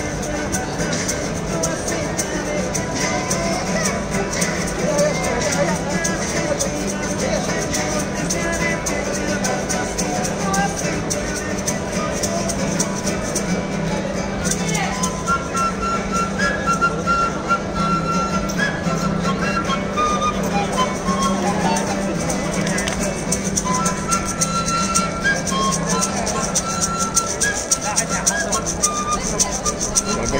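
Street music: an acoustic guitar strummed steadily with a maraca rattle, and from about halfway through a flute playing held notes over the guitar.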